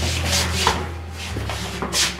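Scuffing and rubbing noises of a person moving about on her feet, a few short scrapes a second, over a steady low hum.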